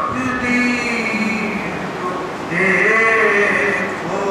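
A man's voice in unaccompanied melodic chanting, holding long notes and gliding between pitches, with a higher held note starting about two and a half seconds in.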